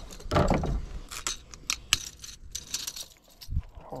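Irregular clicking and metallic jingling as a freshly landed smallmouth bass and the lure's hooks are handled on the boat deck, with a louder knock about half a second in.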